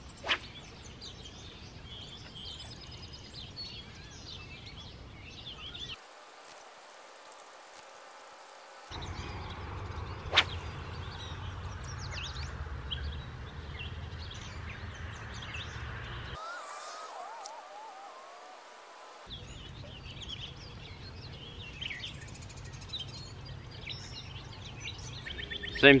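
Outdoor riverside ambience: small birds chirping and singing throughout over a steady low rumble, with one sharp click about ten seconds in.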